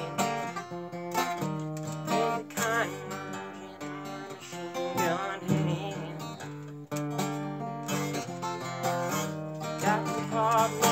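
Steel-string acoustic guitar with a capo, strummed in a steady rhythm. Wavering vocal sounds without clear words rise over it twice, about a quarter and half way through.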